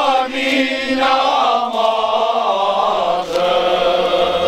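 Male choir singing cante alentejano unaccompanied, many voices together on long held notes, with a short break about three seconds in.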